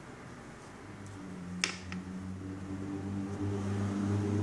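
A sharp click, then a lighter second click, over a low hum that comes in about a second in and grows louder.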